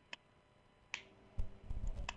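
Two sharp clicks about a second apart, then the low hum and hiss of a telephone line opening as a call is patched into the studio.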